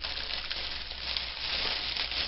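Clear cellophane bag crinkling steadily as it is handled.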